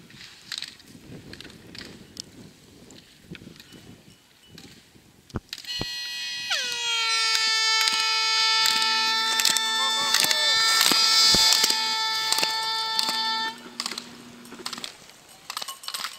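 A loud, steady horn note lasting about eight seconds. It starts about five and a half seconds in with a short drop in pitch, and a lower note joins twice partway through. Under it come sharp clacks of slalom poles as a skier knocks them aside on the way down the course.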